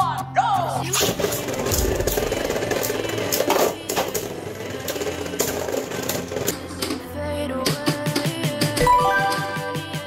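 Beyblade Burst spinning tops clattering and clashing in a plastic stadium, a dense run of sharp clicks from about a second in, under background music.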